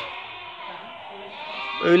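A flock of sheep penned in a barn bleating at a low level in the background, several overlapping calls. A man's voice comes in near the end.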